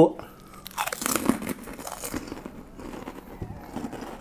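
A person biting into a crispy Indonesian kerupuk cracker and chewing it, with the loudest crunches about a second in, then a run of smaller crackling crunches as it is chewed.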